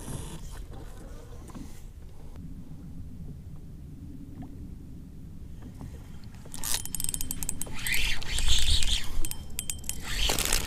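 A steady low rumble, then about six and a half seconds in, a louder stretch of rapid clicking and rushing noise as a bass is hooked on a spinning rod and reeled in.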